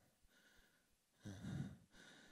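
A near-silent pause, then a man's audible breath, a short sigh of about half a second, just past the middle.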